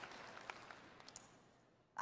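Near silence: faint room tone that fades away, with a couple of faint ticks.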